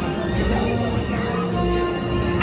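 Music with held notes over a deep low rumble.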